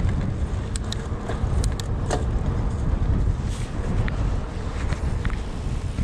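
Wind rumbling on the camera microphone as an XC hardtail mountain bike rolls along, with scattered sharp clicks and rattles from the bike.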